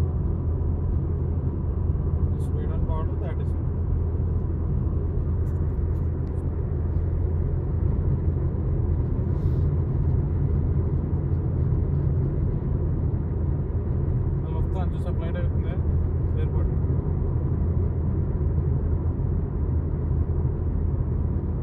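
Steady low rumble of a car's road and engine noise heard inside the cabin while driving, with faint voices twice, briefly.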